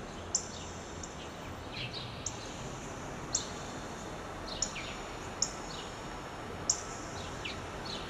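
Outdoor ambience with birds chirping: short, high chirps about once a second, some with a quick falling note, over a steady quiet background.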